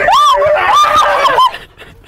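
A woman screaming in fright: loud, high-pitched shrieks for about a second and a half, then breaking off.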